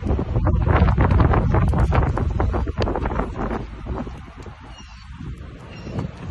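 Wind buffeting the microphone, a heavy low rumble for the first three seconds or so that then eases off, with scattered short knocks and scuffs through it.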